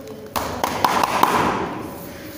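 Grappling bodies scuffling and thudding on foam mats, with several sharp taps among them, starting suddenly and fading out about a second and a half later.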